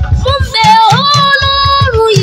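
A young boy singing into a microphone over live band accompaniment with a pulsing bass beat. His voice slides up about a second in and holds one long note.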